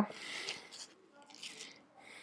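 Faint rustling and rubbing of fabric and hands on a leg as a strap and small treatment pods are fitted on the thigh, in two short bursts.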